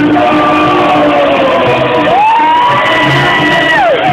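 Karaoke: a man singing into a handheld microphone over a loud backing track. About halfway through a long high note rises in, is held, and slides down near the end.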